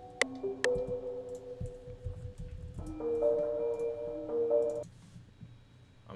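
Software piano-like keys from an Omnisphere instrument playing back a slow melody of held notes, with one metronome click just after the start. A louder chord sounds about three seconds in and cuts off near five seconds.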